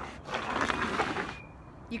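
A sneaker scraping and sliding across the slick, wet wooden boards of a footbridge: a gritty scuff lasting about a second.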